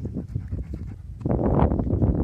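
A dog panting rapidly, much louder from a little past halfway through.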